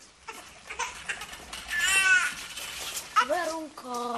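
Voice sounds without words: a loud, high cry that rises and falls about two seconds in, then shorter, lower vocal sounds near the end, with rustling and light knocks of movement before them.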